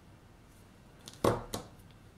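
A pair of small steel jewellery pliers set down on the tabletop: a sharp knock about a second in, then a lighter second knock just after.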